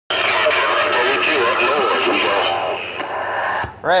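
A voice coming in over a Galaxy CB radio's speaker, hissy and hard to make out under the static. The transmission cuts off with a click about three and a half seconds in, and a man starts to answer.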